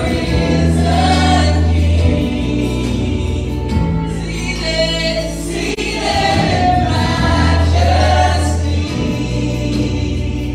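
Live gospel worship song sung by a small group of singers with instrumental accompaniment. Deep low notes are held under the voices for about two seconds at a time, near the start and again about seven seconds in.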